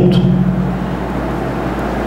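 A steady low hum, one unchanging drone that holds without a break.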